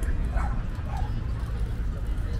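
Outdoor park ambience: a steady low rumble, with two short distant animal calls about half a second apart.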